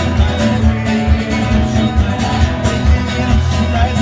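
Acoustic guitar strummed in a steady rhythm, about three strokes a second.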